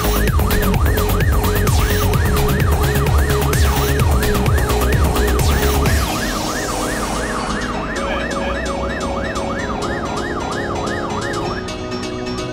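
Fire engine siren in a fast yelp, sweeping up and down a few times a second. It plays over electronic music with a steady beat, whose heavy bass drops away about halfway through.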